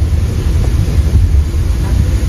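Steady low road and engine rumble inside the cabin of a car driving at highway speed.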